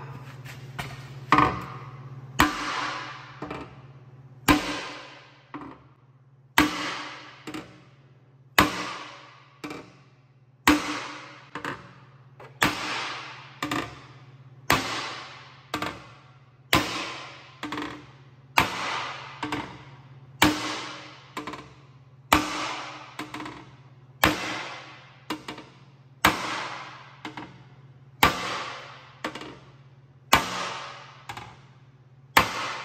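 A hammer striking the thin aluminum wall of a cracked camper water tank to beat a bulged seam back into shape. The blows come regularly, roughly one every second or two, and each rings out briefly through the hollow tank.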